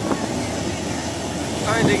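Loud, steady rushing roar, with a man's voice starting near the end.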